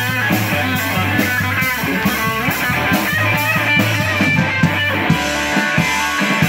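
Live rock band with no vocals: a 1967 Gibson SG Junior electric guitar plays a lead line with bent notes over a drum kit's steady beat.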